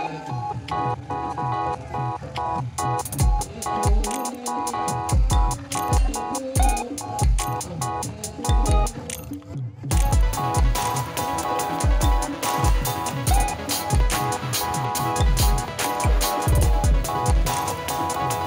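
Madal and dhamsa drums played in a driving rhythm, with deep booming strokes and a steady sustained melody running over them. The heavy strokes build from about three seconds in, with a brief break just before the middle.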